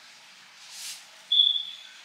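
A single short high-pitched beep, starting abruptly just past halfway and fading out over about half a second, after a faint soft hiss.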